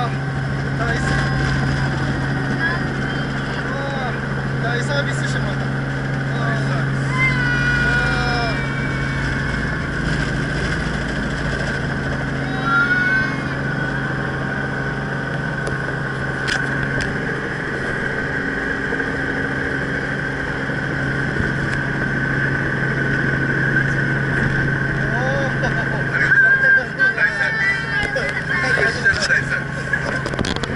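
Robinson R44 helicopter's piston engine and rotor running steadily, heard from inside the cabin, as the helicopter sets down and sits on the ground. A steady drone with fixed low tones.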